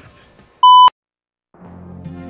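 A single loud electronic beep at one steady pitch, about a third of a second long, cutting off abruptly with a click. Dead silence follows, then music fades up about a second and a half in.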